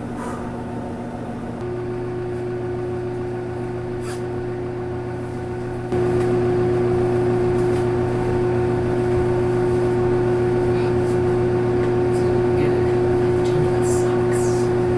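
Steady electrical machine hum with a low buzzing tone. It steps up in level about a second and a half in, and again more sharply about six seconds in.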